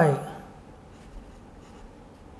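Faint scratching of a pen on paper as words and figures are written.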